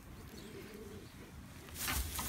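A faint, low call about half a second in, and a short rustling just before the end.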